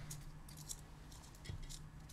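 Faint, light clicks and ticks of a screwdriver working on a small drone frame, loosening the screws of its standoffs, over a low steady hum.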